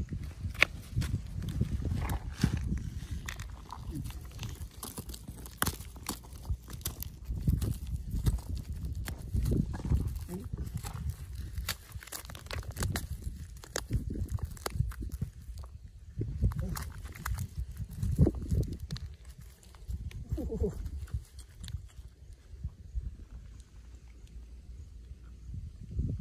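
Small pebbles and gravel clicking and grating against each other as fingers dig and sort through stony soil, irregular sharp clicks over a low rumble.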